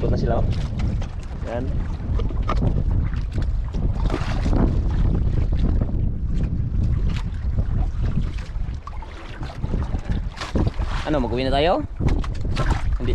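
Strong wind buffeting the microphone on a small outrigger boat at sea, with choppy water splashing and knocking against the hull and bamboo outriggers.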